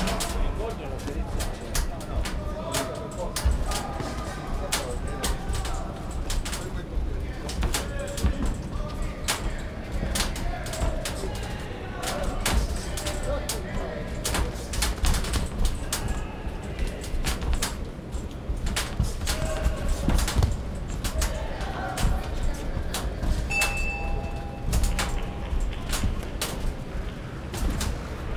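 Boxing arena noise during a bout: indistinct shouting from the crowd and corners, with frequent sharp smacks as gloves land, and a brief held whistle-like tone near the end.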